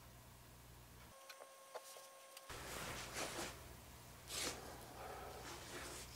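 Faint handling noises: soft rustles and scrapes of hands working with materials over the scenery, with two louder hissing rustles about three and four and a half seconds in. Before them the steady low hum briefly drops out, with a few faint clicks.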